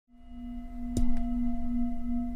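Intro music for a logo: a sustained ringing tone like a struck singing bowl, swelling in from silence, with two sharp clicks about a second in.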